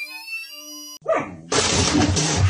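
A synthetic rising pitch sweep with a glitchy stutter cuts off about a second in. A dog then bursts into loud barking at a cat pushing through a cat flap.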